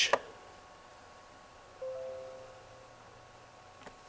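A short, soft chime of a few pitched notes about two seconds in, fading out over about a second, over faint room tone.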